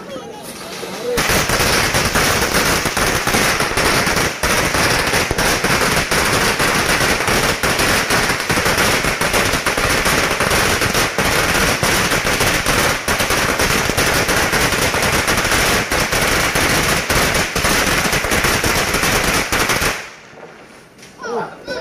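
A long string of red firecrackers going off in one unbroken, rapid-fire crackle of bangs, starting suddenly about a second in and stopping abruptly near the end.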